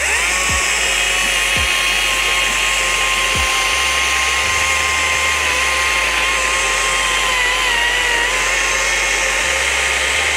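Stihl MSA 140 C 36-volt cordless chainsaw spinning up at once and running with a steady whine as it cuts through a wooden railroad tie under light hand pressure, its pitch dipping slightly about three-quarters of the way through. The motor stays at speed through the cut, sounding effortless.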